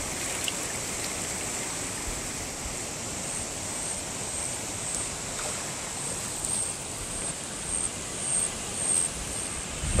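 Shallow mountain river flowing over stones and riffles, a steady rushing of water with a few small swells near the end.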